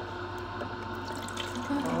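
Juice streaming from the opened spout of a Kuvings slow juicer into a plastic pitcher, over the juicer's steady motor hum.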